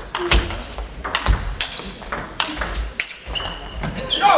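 Table tennis rally: the ball clicking sharply off the rackets and the table in a quick exchange, a dozen or so hits in a few seconds.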